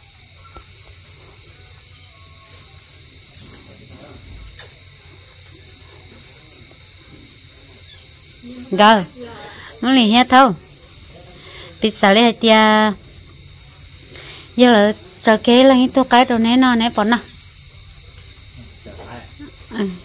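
A steady, high-pitched insect chorus, like crickets chirring, runs without a break. From about nine seconds in, a person speaks over it in several short phrases with a wavering pitch; these are the loudest sounds.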